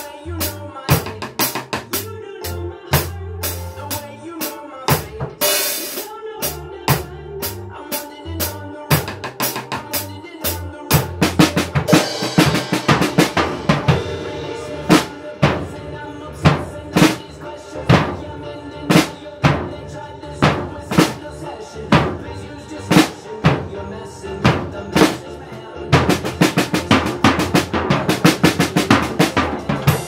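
Acoustic drum kit playing a steady kick-and-snare groove with cymbals, over a backing track. The pattern gets busier about a third of the way in, with a rapid run of hits near the end.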